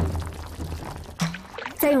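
Water boiling and bubbling in a pot of dried yellow bamboo shoots being cooked soft, with background music underneath.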